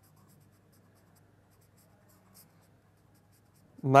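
Pen writing on paper: faint scratching strokes as a word is written out by hand.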